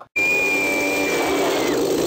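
Chainsaw running steadily on a film soundtrack, cutting in abruptly, with a thin high tone over it that drops slightly in pitch near the end.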